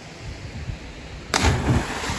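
A body hitting water in a belly flop from a cliff jump: a sudden crashing splash about 1.3 seconds in, with heavy low thuds, then a continuing rush of churned water. Low rumbling thumps come before it.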